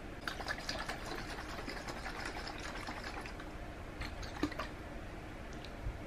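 Faint dripping and small clicks as drops of black food coloring are squeezed into water in a small glass bottle, most of them in the first three seconds or so, with a few more clicks a little later.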